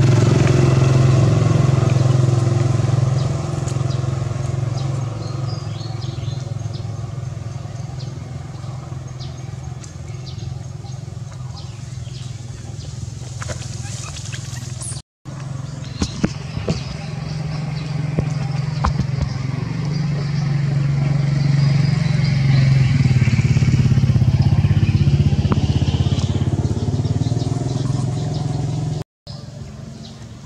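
A motor engine running steadily close by, a constant low hum that fades somewhat after the first few seconds and swells again about two-thirds of the way through. The sound cuts out briefly twice, near the middle and near the end.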